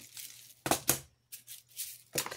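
Hands handling small craft supplies on a worktable: two sharp clicks a little before a second in, then brief rustling.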